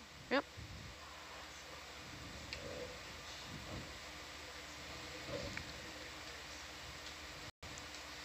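Faint, steady hiss with a low hum from the ROV control room's communications audio feed, broken by a very brief dropout near the end.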